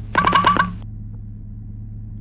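Cartoon Road Runner 'beep beep' sound effect: a quick run of five honking notes in the first second, the tail of a clip that loops identically. A steady low hum sits underneath.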